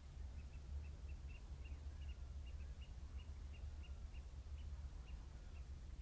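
A flock of distant birds calling from the mudflats: faint, short, high peeps, about two or three a second, over a low steady rumble.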